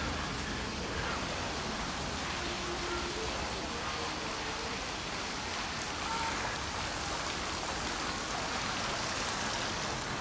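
Steady, even outdoor background hiss with no distinct events, only a few faint, brief tones.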